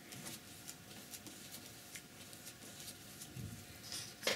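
Faint scratchy ticks and swishes of a flat paintbrush being worked through acrylic paint on palette paper as it is loaded.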